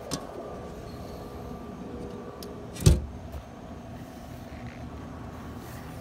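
A boat's aluminium deck hatch lid shuts with a single loud thump about three seconds in, over a steady low background hum.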